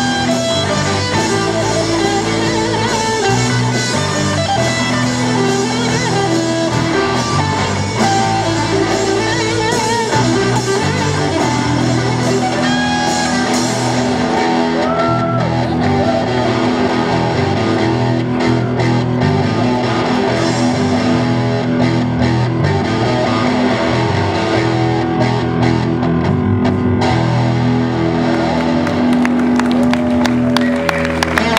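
Live rock band playing a song on electric guitars, bass guitar and drum kit, loud and unbroken.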